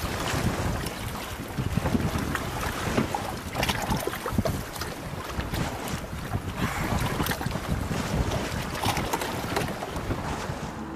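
A boat moving over choppy water, with wind buffeting the microphone and water splashing against the hull in uneven bursts.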